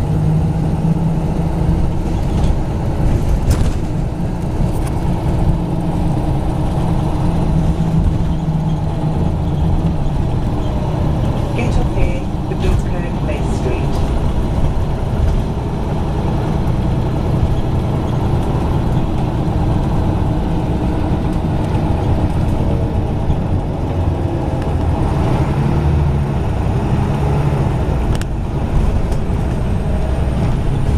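Bus engine running, heard from inside the moving bus: a low drone that strengthens and eases as the bus accelerates and slows, with scattered short rattles from the cabin.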